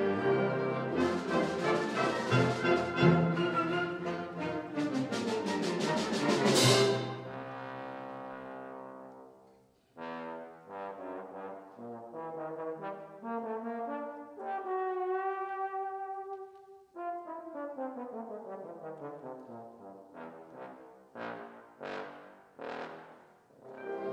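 Concert band playing loudly, capped by a cymbal crash about six seconds in that rings away. Then a solo trombone plays alone: a run of notes, one long held note, a smooth fall in pitch over about three seconds, and a few short sharp notes near the end.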